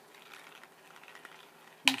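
Faint handling rustle, then one sharp click near the end as something hard taps a plastic plant pot.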